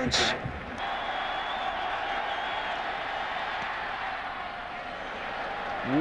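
Steady noise of a large stadium crowd, heard through the television broadcast.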